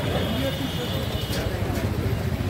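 Indistinct voices of several people talking over a steady low rumble.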